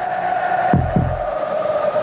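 Heartbeat sound effect: a lub-dub pair of low thuds about three-quarters of a second in, over a steady background sound.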